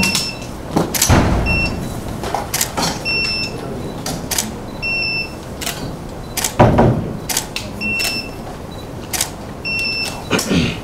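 Camera shutters clicking in quick, irregular succession, with short high focus-confirmation beeps before some shots. Two heavier thumps come about a second in and again near seven seconds.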